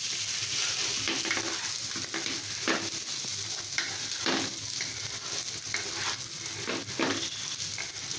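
Raw rice frying in a pan and stirred with a wooden spatula: a steady sizzle, with a scrape of the spatula across the pan every second or so.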